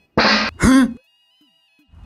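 Two short voice sounds in quick succession in the first second, each with a sliding pitch.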